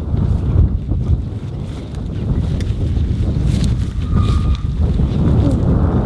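Wind buffeting the microphone, an uneven low rumble, with a brief high tone about four seconds in.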